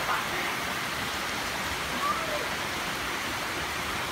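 Heavy rain falling steadily, a continuous even hiss of rain on the ground and the wet road.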